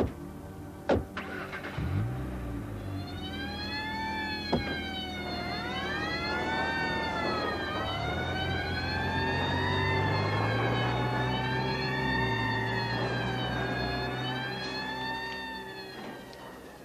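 Police car sirens wailing, several overlapping, rising and falling in pitch, starting about three seconds in, over a running car engine. A few sharp knocks in the first seconds, like car doors being shut.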